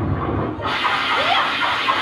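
Experimental voice-and-live-electronics performance: a low rumbling texture gives way, under a second in, to a loud rushing noise like running water, with a brief rising vocal glide over it.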